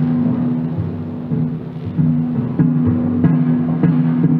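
Orchestral music: low held notes, each renewed by a stroke every half second to a second.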